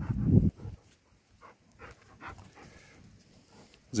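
Dogs play-wrestling with a puppy: a short low growl in the first half-second, then faint panting and small sounds.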